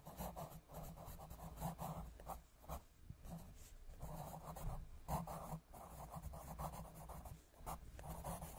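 Pencil scratching on paper in quick, irregular back-and-forth strokes as it colours in, with a few brief pauses.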